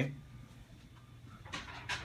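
Quiet room with a faint, steady low hum, and a person's breath drawn in near the end.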